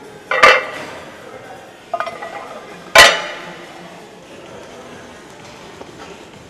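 Cast iron weight plates clanking against each other and the steel barbell sleeve as they are loaded onto the bar: a loud metallic clank about half a second in, a smaller rattle at about two seconds, and the loudest clank about three seconds in, each ringing briefly.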